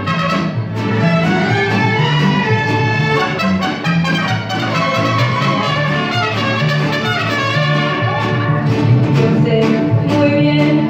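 Mariachi band playing live: violins and trumpets carrying the melody over strummed guitars and a steady, rhythmic bass line.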